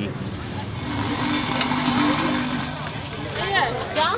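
A motor vehicle passing on the street, its engine hum and road noise swelling to a peak about halfway through and then fading.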